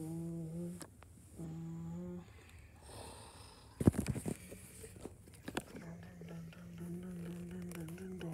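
A person humming low, long held notes: two short phrases near the start and a longer one through the last couple of seconds. A quick cluster of loud knocks and clatters comes about halfway through.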